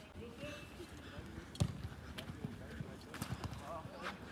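Football match play: a sharp thud of the ball being kicked about a second and a half in, with scattered footfalls of running players and faint voices shouting on the pitch.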